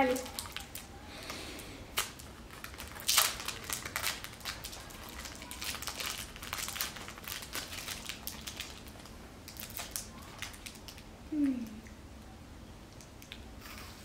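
Wrapper of a KitKat chocolate bar crinkling as it is peeled open, in scattered crackles drawn out over about ten seconds, with louder bursts about three seconds in and again around six to seven seconds. A short vocal sound comes about eleven seconds in.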